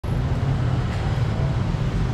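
Steady low rumble of city street traffic, with no distinct events.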